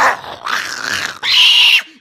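A dog growling, rough and noisy, then a louder burst in the last second.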